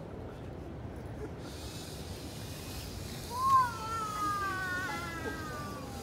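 A micromouse's suction fan spins up with a steady high hiss, then the robot's drive motors give a high whine that rises sharply as it launches and slides slowly down in pitch as it speeds through the maze.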